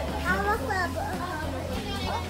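A child's high-pitched voice chattering briefly in the first second, over a low steady hum.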